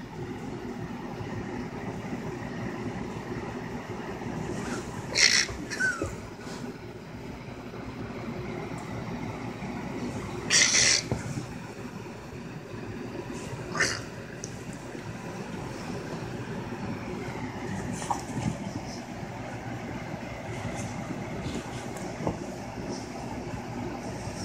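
Cavalier King Charles Spaniel puppy at play on a couch: three short, sharp sounds about five seconds in, near the middle and shortly after, with a few fainter ones later, over a steady low room hum.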